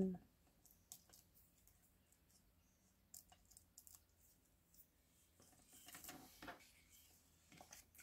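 Near silence, with faint scattered taps and a soft paper rustle about six seconds in, from small die-cut paper pieces being pressed down and handled on a cutting mat.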